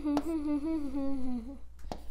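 A child humming under his breath, a wandering string of short held notes that stops about three-quarters of the way through, with a couple of sharp clicks, one near the start and one near the end.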